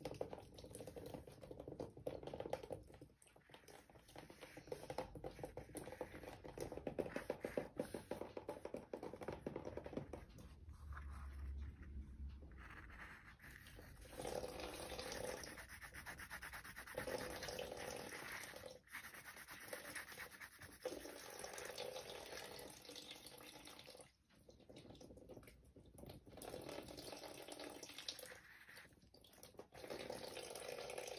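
Pen rubbing back and forth on a paper worksheet, shading a drawing in runs of quick scratchy strokes broken by short pauses.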